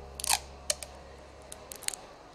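A paper poster being put up on a glass door: a short rip-like scrape about a third of a second in, then a scatter of small sharp clicks and taps.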